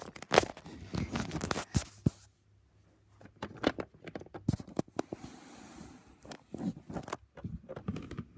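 Small plastic toy pieces and a plastic playhouse being handled up close: irregular light clicks, knocks and scrapes, with a soft rustle about five seconds in.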